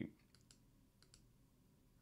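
Four faint computer mouse clicks in two quick pairs, about half a second apart, over near silence.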